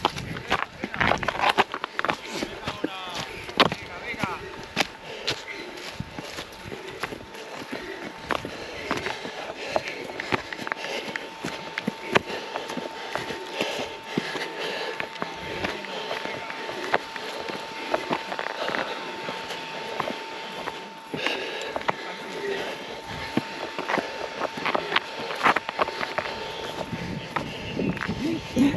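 Trail-running footsteps on a rocky, grassy mountain slope: an irregular run of short scuffs and knocks of shoes on stones and turf. A thin, steady high tone sits underneath from about eight seconds in.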